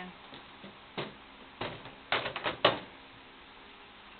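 Pin deflector boards knocking and clattering as they are put back into a Brunswick GS-X pinsetter: one knock about a second in, then a quick run of knocks, the loudest near three seconds in.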